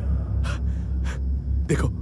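A man gasping twice in short, sharp breaths, then starting to speak, over a steady low rumble.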